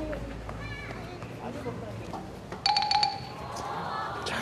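Faint voices in the open air. About three-quarters of the way through comes a short, bell-like ding lasting well under half a second.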